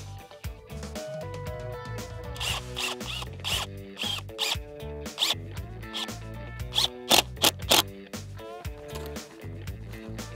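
Cordless drill driving a screw through a wooden screed rail into a stake, in two bursts: one about two seconds in and a shorter, louder one about seven seconds in. Background music plays throughout.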